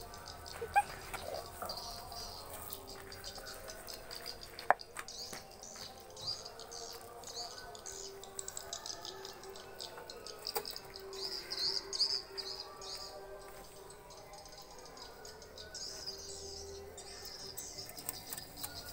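Small birds chirping on and off, high-pitched, with a couple of sharp clicks, the clearest about five seconds in.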